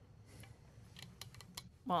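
Faint, irregular clicking of typing on a laptop keyboard over a low room hum, with a man's voice starting near the end.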